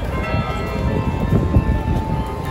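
Bells ringing, many overlapping tones sounding together over a steady low rumble.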